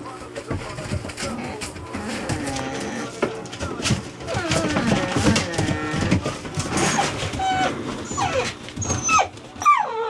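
Nine-week-old puppies yelping and whining as they play-fight, many short cries that rise and fall, with one long falling cry near the end.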